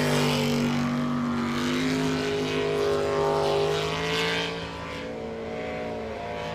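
Jet sprint boat engine running hard at high revs, a steady note with small shifts in pitch that eases slightly in loudness about four and a half seconds in.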